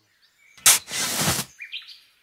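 Cartoon sound effect of a shovel digging into dirt: a sharp scrape followed by a rushing noise of soil lasting under a second. Faint bird chirps follow near the end.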